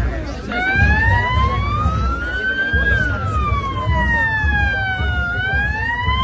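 Police car siren wailing: one slow rise and fall in pitch over about five seconds, starting to rise again near the end. Underneath is the low noise of a walking, talking crowd.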